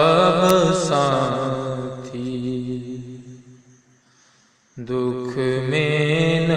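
A man chanting a long, drawn-out devotional note into a microphone, held for about four seconds and fading away. After a brief pause, a second long chanted note begins near the end.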